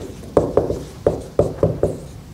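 Dry-erase marker writing on a whiteboard: a quick, uneven series of short taps and knocks as the marker tip strikes and strokes the board.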